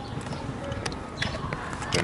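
A few short plastic clicks and knocks as the jumper cable's plug is fitted into a portable lithium jump starter pack, over steady outdoor background noise.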